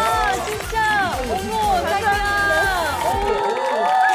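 Excited exclamations and shouts from several voices over upbeat background music; the low beat of the music drops out near the end.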